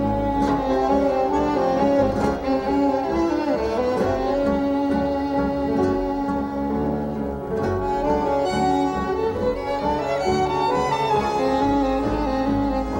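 Live tango quintet playing an instrumental piece, with a violin leading in long bowed notes over the ensemble.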